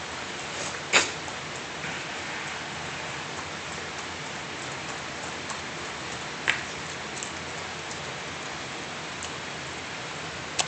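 A small dog lapping cola from a foam cup: faint scattered wet ticks over a steady hiss, with a sharp click about a second in and another a little after six seconds.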